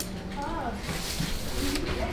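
Quiet stretch of background voices in a room, with a soft, brief vocal sound about half a second in.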